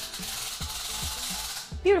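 Tape of a retractable body tape measure pulled out of its small plastic case by its red stick: a steady rubbing hiss for about a second and a half, then stopping.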